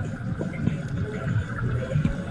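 Low, uneven rumble of a small boat moving on the water, with water and wind noise on the microphone.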